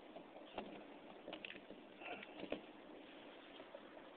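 Faint handling noise of a hand rummaging in a zippered bag: light rustles and a few small clicks and knocks, the loudest about two and a half seconds in.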